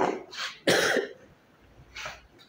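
A man coughing: three coughs in quick succession in the first second, the third the loudest and longest, then one more short cough near the end.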